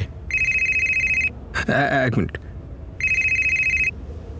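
Telephone ringing with an electronic trilling ring: two rings of about a second each, about three seconds apart.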